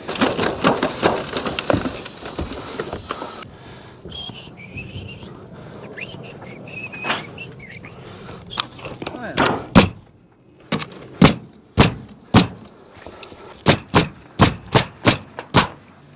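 Tin snips cutting sheet-metal valley flashing for the first few seconds. From about ten seconds in, a pneumatic coil roofing nailer fires about a dozen sharp shots, a fraction of a second apart, nailing the valley metal down.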